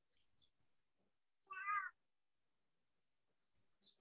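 Near silence broken once, about a second and a half in, by a brief high-pitched cry lasting under half a second.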